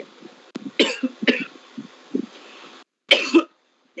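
A person coughing several short times, the last cough, near the end, the loudest.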